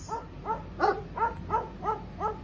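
Dog barking in a quick, even series of short barks, about three a second.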